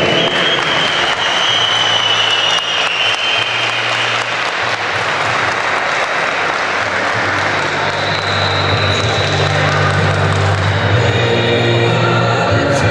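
Audience applauding, a dense steady clapping, over background music with a sustained bass line.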